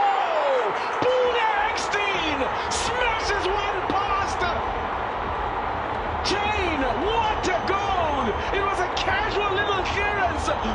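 Football stadium crowd: a dense, steady mass of voices with many individual shouts rising and falling over it, and scattered sharp cries.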